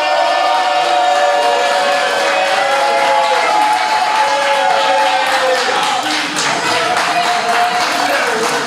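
Several people's voices holding a long, drawn-out cheer together, sustained for several seconds like a chant, as a shot is taken straight from the bottle.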